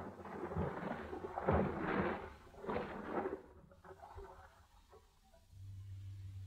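Radio-drama sound effect of sea water washing, three noisy swells in the first few seconds, then fainter. A low steady hum comes in near the end.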